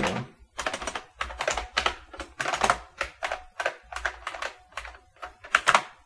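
Computer keyboard typing: a run of separate, uneven keystrokes, about three or four a second.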